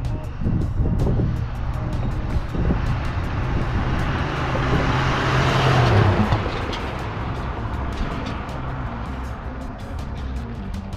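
1986 Chevrolet C10 pickup's 305 V8 driving past, growing louder to a peak about six seconds in, its engine note dropping as it passes and then fading as it drives away. Background music with a steady beat runs underneath.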